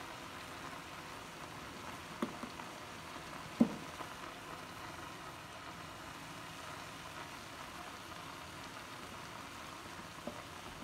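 Steady soft hiss of greens dry-frying without oil in an iron kadai, with two sharp knocks of a steel ladle against the pan about two and three and a half seconds in, the second louder.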